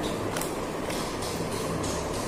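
Scissors cutting paper: a quick run of short snips, several in two seconds, over a steady low hum.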